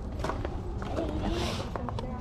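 Indistinct talking at a low level, with scattered light clicks and knocks and a brief rustle about one and a half seconds in, from items being handled and footsteps on gravel.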